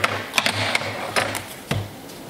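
A handful of sharp clicks and knocks, about five in two seconds, as a home-built supercapacitor stack is taken apart by hand and its yellow plates are handled on a metal workbench.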